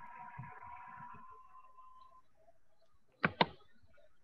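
A faint steady tone that fades out about two seconds in, then two sharp clicks in quick succession near the end, the loudest sounds here.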